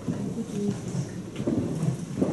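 Low rumbling and shuffling of a congregation getting to its feet, with scattered faint murmur, louder in the second half.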